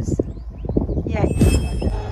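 Low wind rumble on a handheld phone microphone with scuffing footsteps on a path while walking. About a second and a half in there is a brief bit of a voice.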